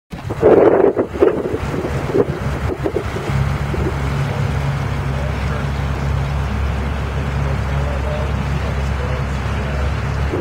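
Evinrude outboard motor driving a boat along, a steady low drone under wind buffeting the microphone. The drone settles to an even pitch about three seconds in.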